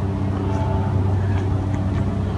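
A steady, low-pitched mechanical hum, with a faint higher tone partway through.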